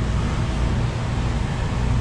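HRV blower fan running steadily: a constant low drone with an airy hiss.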